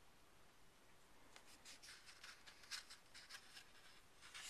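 Faint rustling and brushing of a book's smooth matte paper pages under the hands. A handful of soft scuffs start about a third of the way in, after a near-silent opening.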